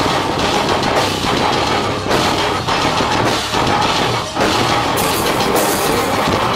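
Heavy metal band playing live: distorted electric guitars and a drum kit, loud and dense, with brief breaks in the riff.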